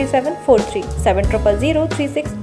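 Voice-over speech over steady background music.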